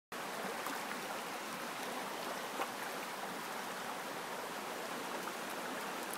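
Shallow stream water running over rocks, a steady rush, with one brief click about two and a half seconds in.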